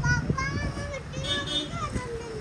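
A young child's high-pitched voice, without clear words, over low background noise.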